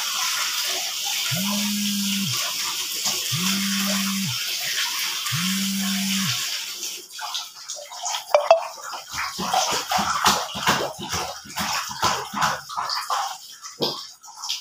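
Water running steadily from a tap into a plastic laundry basin, stopping about seven seconds in; then irregular splashing and sloshing as clothes are worked by hand in the basin of water. Three low buzzes of about a second each, two seconds apart, sound over the running water in the first half.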